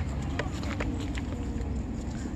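Blueberry bush leaves and twigs rustling as hands push into the branches, with a few light crackles over a steady low rumble.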